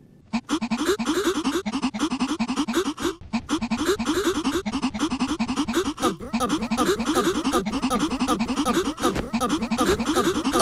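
A short voice sample chopped into a rapid stutter, about five quick pitched blips a second, with brief breaks about three and six seconds in.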